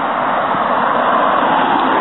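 Car driving past close by on the street, its tyres giving a steady rushing noise on the asphalt.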